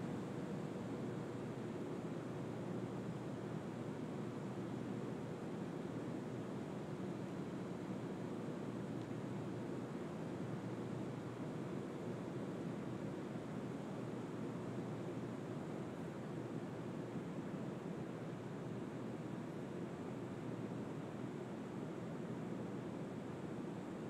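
Steady, even rushing hiss with no distinct events, holding constant throughout.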